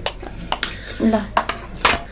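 Wooden chopsticks clicking and tapping against plastic food containers, about four sharp clicks.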